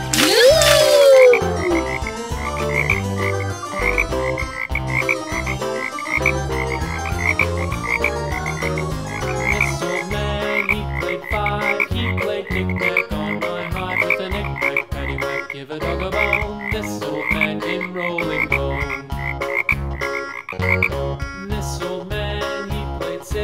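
Upbeat children's background music with a short high blip repeating about twice a second. About half a second in, a cartoon sound effect swoops up in pitch and then back down.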